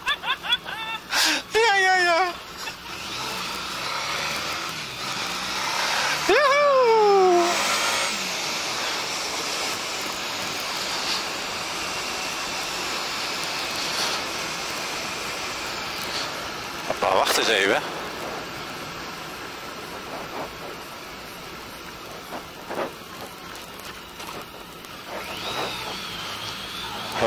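Wind rush and running engine of a Honda ST1300 Pan European motorcycle picked up by a helmet camera while riding, louder as it speeds up early on and quieter as it slows near the end. Short voice sounds break in near the start, around six seconds in with a falling pitch, and again past the middle.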